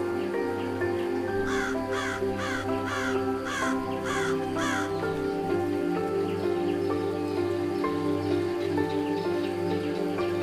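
Soft instrumental music with a bird calling about seven times, roughly two calls a second, each call falling in pitch. The calls start about a second and a half in and stop about five seconds in.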